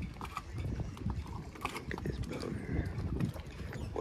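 Dockside harbour ambience: scattered light clicks and creaks over a low, uneven rumble.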